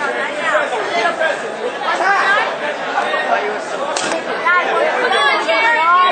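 Ringside spectators calling out and talking over one another, with a single sharp knock about four seconds in.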